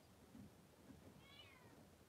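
Near silence: room tone, broken by one brief, faint animal call that rises then falls in pitch a little past a second in.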